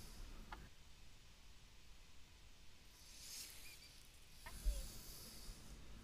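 Quiet outdoor background: a faint high hiss that swells and fades about halfway through, with a low rumble and a couple of soft clicks.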